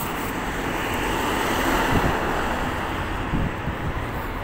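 Road traffic going by, swelling to a peak about two seconds in and then easing, with wind buffeting the microphone.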